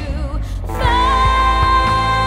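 Band music with a woman singing lead over drums and bass guitar; just under a second in she starts a long held note.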